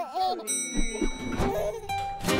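A baby cooing briefly, then a chime like an elevator's arrival bell about half a second in, ringing on as a steady high tone over music.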